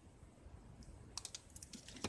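Small scissors cutting cardstock: a quick run of short, faint snips and clicks about a second in.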